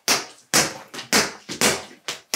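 Boxing gloves punching a hanging teardrop punching bag: four sharp thuds about half a second apart.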